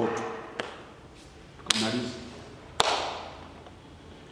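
A man's voice trails off into a pause broken by two sharp knocks about a second apart, each ringing on in a reverberant hall; a short voiced sound comes with the first.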